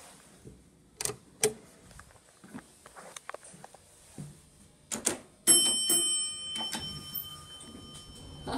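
Elevator alarm bell in a Dover elevator car rings out once, about five and a half seconds in, and fades away over a couple of seconds. A few sharp clicks come before it, about a second in.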